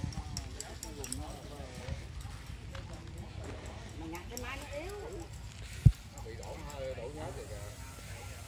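Indistinct talking voices over a low, steady rumble, with one sharp thump about six seconds in.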